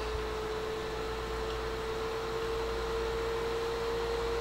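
Mohawk 10 HF linear amplifier's cooling fan running under power, with a steady tone and a low hum. It grows slightly louder as the variac is turned up toward 115 volts.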